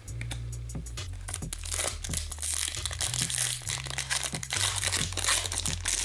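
Hockey trading cards being shuffled and handled, with crinkling and light clicks that grow busier after the first second or so. Background music with a low bass line plays under it.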